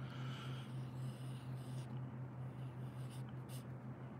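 Faint scratching of a pencil drawing short strokes on paper, over a steady low hum.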